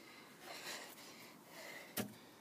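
Faint breathing close to the microphone, swelling and fading a few times, with a single sharp handling knock at the very end.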